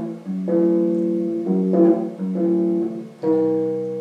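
Electric bass guitar played through a small amplifier: a melodic line of about five held notes, each ringing for half a second to a second before the next.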